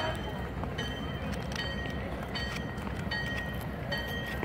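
Distant train bell ringing at a steady pace, about one stroke every 0.7 seconds, over a low, steady rumble.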